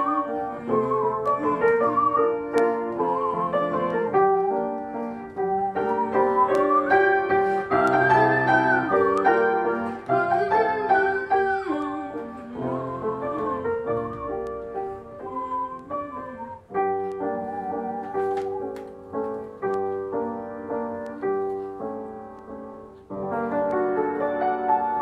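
Grand piano playing a song accompaniment, with a wavering melody line carried over it for roughly the first half. From about two-thirds of the way in, the piano plays on alone.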